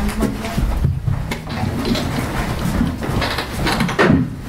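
Microphone handling noise as a handheld microphone is lifted out of its stand clip: an uneven low rumble with scattered knocks and rustles.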